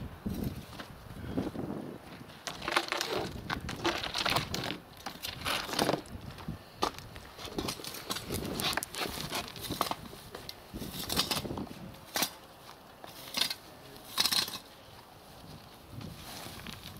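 A rake scraping and dragging dry grass, twigs and soil across the ground and onto a wooden board, in irregular strokes. A couple of sharp knocks come in between.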